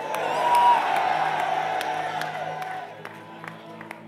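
A congregation cheering and shouting in response, swelling in the first second or so and dying away by about three seconds, with a few scattered claps. Steady low sustained music plays underneath throughout.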